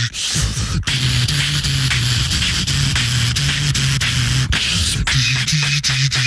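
Live beatboxing into handheld microphones: a fast, steady beat of vocal kick and snare sounds over a hummed bass line that steps between a few low notes.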